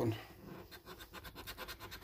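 A coin scratching the scratch-off coating from a paper scratchcard in rapid repeated strokes, many a second.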